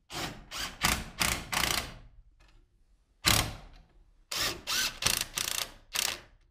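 DeWalt 18V cordless drill driving 1¼-inch screws through a can light's metal bar hanger into a wooden joist, in stop-start bursts: a run of short bursts in the first two seconds, one short burst just after three seconds, and another run from about four and a half seconds.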